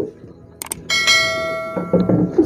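Subscribe-button sound effect: a sharp click, then, about a quarter second later, a bright bell chime that rings on and slowly fades.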